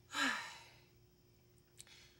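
A person's short breathy sigh with a falling voice, then a quiet stretch with a faint steady hum and a small click near the end.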